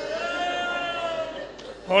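A single voice holding one long wailing note of lament, falling slightly in pitch and fading out about a second and a half in.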